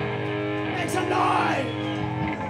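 Live rock band's amplified electric guitars and bass holding a closing chord that rings on steadily, with a short noisy burst about a second in.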